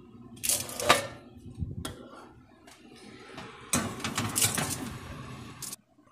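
Handling noises from a foil-lined roasting pan: aluminium foil crinkling in short rustles, with a single light click about two seconds in and a longer rustle near the end.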